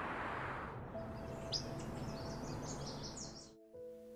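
Steady city traffic noise that fades out about a second in, followed by a run of small birds chirping over a faint held music note; the sound cuts off abruptly near the end.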